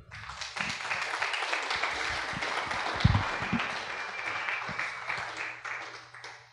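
Audience applauding, a dense patter of many hands that begins at once and tapers off toward the end, with a low thump about three seconds in.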